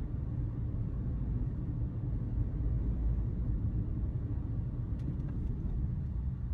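Steady low rumble of road and engine noise inside a car cruising at motorway speed, with a few faint ticks about five seconds in.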